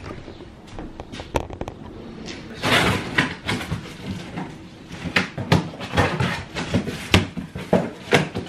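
A cardboard shipping box being cut open with a knife: a longer tearing sound about three seconds in as the blade runs through the packing tape, then a quick run of knocks and rustles as the cardboard flaps are handled.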